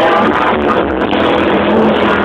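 Live rock band playing on stage.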